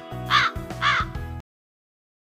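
Cartoon crow-caw sound effect: two caws about half a second apart over background music, the stock comic cue for an awkward pause after a punchline. Everything cuts off suddenly about a second and a half in.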